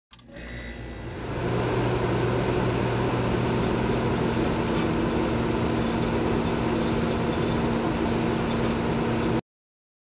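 Logo intro sound effect: a steady, noisy drone with a low hum. It swells in over the first second and a half and cuts off suddenly about nine seconds in.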